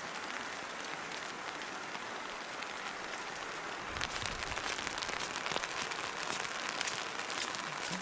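Steady hiss of heavy wet snow and rain falling, the flakes melting to water as they land.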